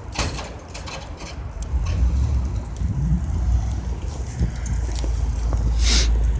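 Pickup truck with a front snowplow and tailgate salt spreader driving along a snowy street: a low engine rumble that grows louder about two seconds in, with two short hisses near the start and just before the end.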